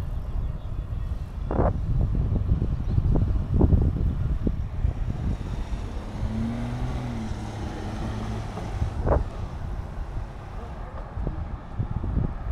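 Wind on the microphone and road rumble while moving along a street, a steady low roar with scattered sharp knocks and clicks. A short hum rises and falls a little past six seconds in.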